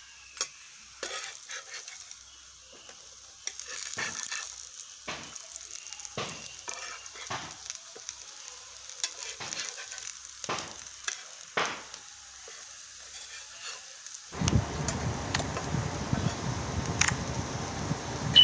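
Pearl-millet adai shallow-frying in oil in a black iron pan, sizzling steadily, with short clicks and scrapes of a steel spatula against the pan as the adai are lifted and turned. Near the end the sizzling grows louder and fuller.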